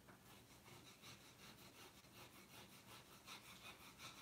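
Fingertips rubbing the back of a printed sheet of freezer paper against a wooden board, a faint, quick back-and-forth scuffing at about five strokes a second: an inkjet print being burnished onto the wood to transfer the ink.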